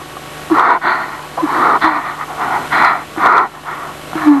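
A person sobbing in breathy, broken gasps, about two a second, each gasp catching briefly on the voice.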